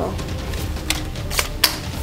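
Plastic magazine of an H&K MP7 airsoft AEG sliding up into the pistol grip, with a few sharp clicks, the loudest near the end as it seats. A low rumble runs underneath.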